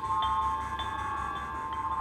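Dramatic background score: a sustained high drone with soft chime-like notes repeating about every half second.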